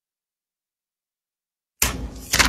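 Dead silence, then near the end a sudden loud rustle of thin Bible pages being turned close to a lapel microphone.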